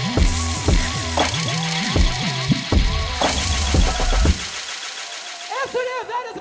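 Loud electronic dance music over a club sound system, with heavy bass notes and kick drums, cutting off suddenly about four seconds in. Near the end a voice comes through a microphone, echoing in the hall.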